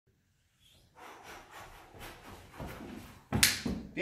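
Footsteps on a carpeted floor, soft and about two a second, as a person walks into place. About three and a half seconds in comes a single sharp slap, the loudest sound.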